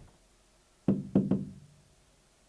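Three quick, hollow knocks about a second in, each leaving a short low ring.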